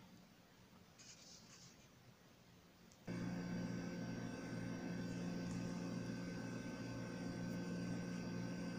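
Faint room tone, then about three seconds in a steady drone with several held tones starts suddenly and runs on unchanged.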